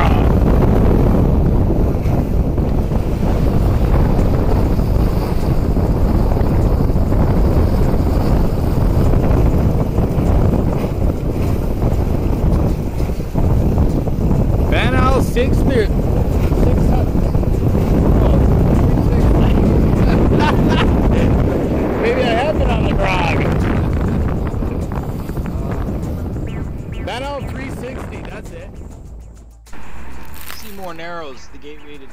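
Strong wind buffeting the microphone over water rushing along an Albin Vega sailboat's hull while under sail, fading down near the end.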